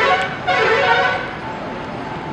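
A road vehicle's horn honks twice within the first second or so, over general outdoor street noise.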